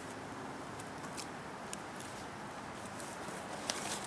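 Quiet outdoor background hiss with a few faint, sharp clicks scattered through it.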